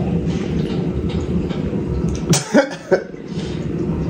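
A person coughing briefly about two and a half seconds in, over a steady low drone in the room.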